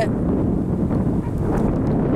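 Wind blowing on the microphone, a steady low rushing noise.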